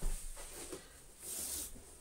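Faint handling noise from a plastic vacuum-cleaner hose and handle being picked up: a soft low knock at the start, then light rustling with a brief hiss near the middle.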